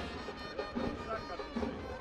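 Faint stadium background from a football ground: distant crowd noise with a few faint sustained musical notes from the stands.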